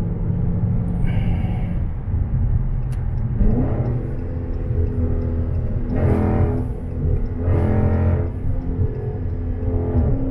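Dodge Challenger SRT's Hemi V8 heard from inside the cabin at highway speed: a steady low rumble with road noise. A few seconds in, the engine note rises and holds, then swells a couple more times.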